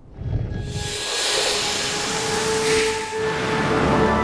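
A long rushing hiss of air swells up in the first second and carries on, with sustained music tones coming in underneath about a second in.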